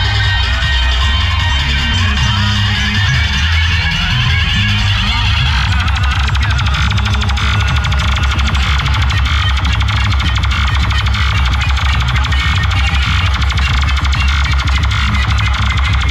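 Loud music played through a towering DJ sound rig of stacked horn loudspeakers, with a heavy bass that runs without a break.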